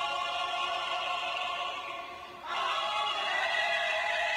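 A vocal group singing held chords in close harmony, echoing in a stone hall. The first chord fades about two seconds in and a new, fuller chord starts just after.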